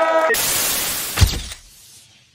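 A sudden burst of hiss-like noise, with one deep boom a little over a second in, then fading away: an edited outro sound effect as the picture goes to black.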